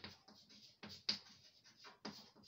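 Chalk writing on a blackboard: a quick string of faint taps and short scrapes as each symbol is stroked out, with a sharper tap at the start and another about a second in.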